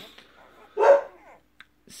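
A dog barks once, about a second in, with a fainter short sound at the very start.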